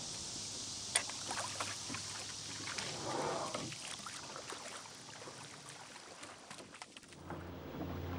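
Oars and oarlocks of a wooden rowing wherry being handled on the water: a sharp click about a second in and a few lighter knocks, then a brief swish of water around three seconds in as the oar blades move.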